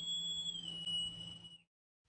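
Edited-in transition sound effect for a title card: a high, steady whistle-like tone that bends slightly up in pitch and settles back, over a faint low hum. It cuts off about one and a half seconds in.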